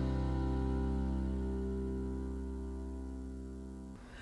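A live acoustic band's final chord, guitars and piano, held and ringing out, fading away slowly.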